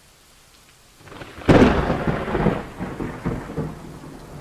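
A thunderclap over rain: faint rain hiss, then a sudden loud crack about a second and a half in that rolls on into a fading, uneven rumble.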